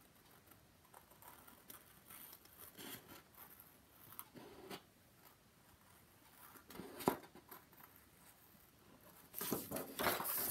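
Small scissors cutting a curve out of cardstock: faint, irregular snips, one sharper snip about seven seconds in. A louder rustle of paper being handled comes near the end.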